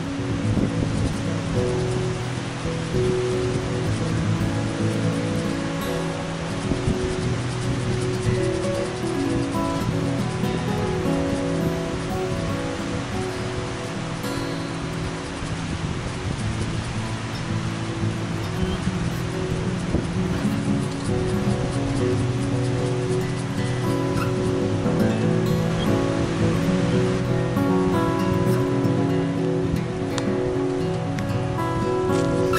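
Background music of held notes that change slowly in pitch.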